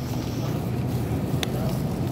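A low, steady rumble with a single sharp click about one and a half seconds in.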